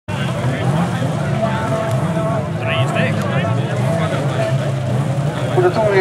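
Car engines running at the start area of an autocross track, their low note wavering up and down, with people talking over them.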